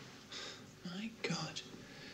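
A short line of quiet, whispered speech.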